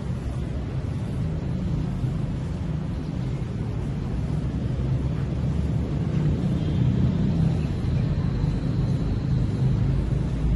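Wind buffeting the microphone, a low uneven rumble that grows louder in the second half.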